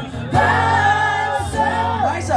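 Live pop-rock singing with acoustic guitar accompaniment: a long held sung note from about half a second in, then a new phrase starting just before the end.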